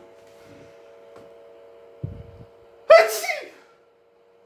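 A man's single sudden, loud, sneeze-like burst about three seconds in, preceded by a dull low knock, over a faint steady hum.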